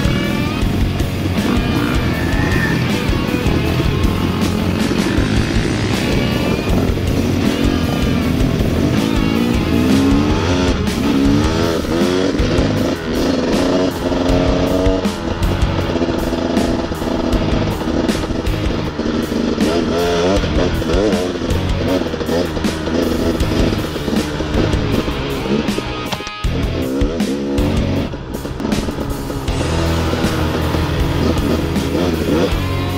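Dirt bike engine heard from the bike's onboard camera, revving up and falling back again and again as the rider accelerates and shifts along a dirt trail.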